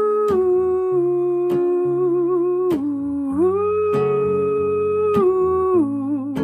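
A man humming a slow wordless melody in long held notes with a slight waver, over an acoustic guitar strummed about once every second and a quarter.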